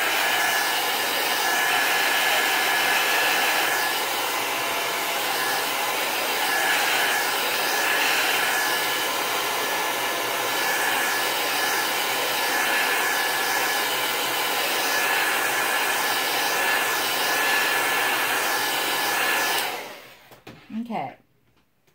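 Handheld craft heat gun blowing steadily to dry a fresh coat of spray Mod Podge on a canvas. A thin steady whine rides over the rush of air, and the gun switches off just before the end.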